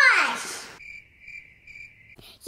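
A falling pitched sound fades out in the first second. Then comes a thin, high, steady cricket chirping that pulses on and off for about a second.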